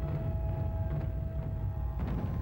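Background music: a single note held steadily over a heavy, dense low end.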